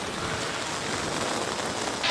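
Steady hiss of an open team-radio channel between transmissions, an even noise with no tone in it.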